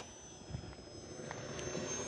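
Faint, distant whine of a small RC warbird's brushless electric motor and propeller in flight, slowly growing louder.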